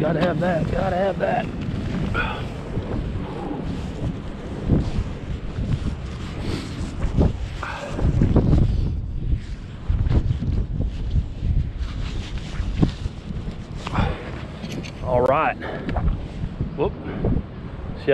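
Wind buffeting the microphone, with scattered knocks from handling fishing tackle at a truck tailgate. A man's voice mumbles briefly near the start and about 15 seconds in.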